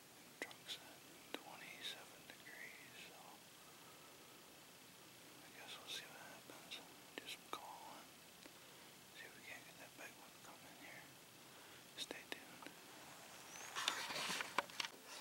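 A man whispering quietly close to the microphone, with a few faint clicks.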